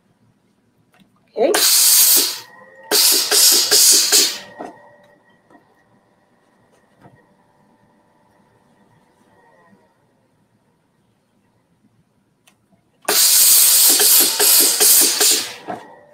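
Steam iron hissing out bursts of steam while pressing fabric: two hisses a few seconds in and a longer one near the end.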